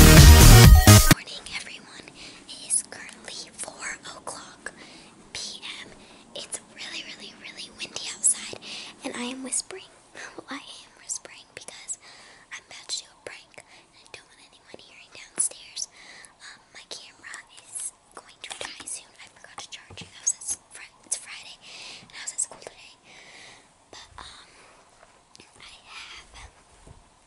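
Intro electronic music that cuts off about a second in, then a girl whispering close to the microphone in short breathy phrases.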